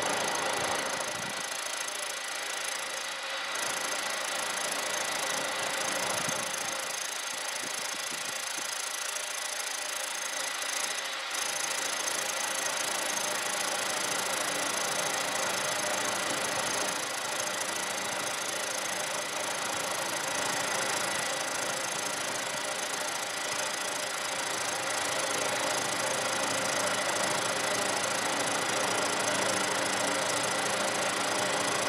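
Milling machine running steadily, its end mill taking an extremely light cut across the face of a steam engine's column.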